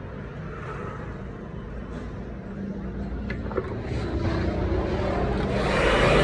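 A steady machine hum with a rushing noise that grows steadily louder, becoming loud near the end. There are a couple of light clicks about three seconds in.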